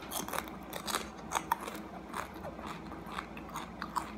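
Close-up chewing of a crunchy chip: irregular crisp crunches, about three a second.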